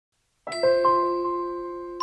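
Intro music of bell-like chime notes that start about half a second in, several struck in quick succession and then left to ring and slowly fade.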